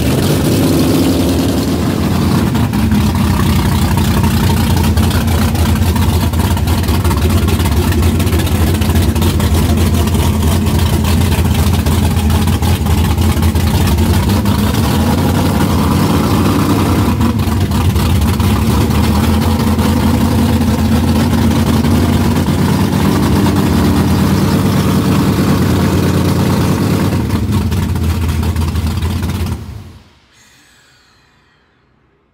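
1969 Chevelle's engine running steadily and loudly with an even firing pulse. The sound ends abruptly near the end.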